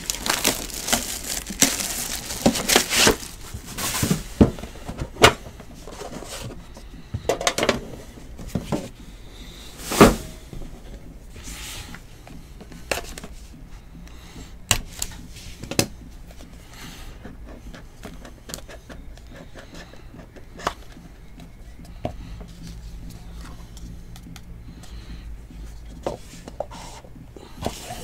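Crinkling and tearing as a sealed trading card box is torn open, dense at first. Then come scattered sharp clicks, taps and rustles of cardboard being handled as the small inner box's flap is worked open, with one louder click about ten seconds in.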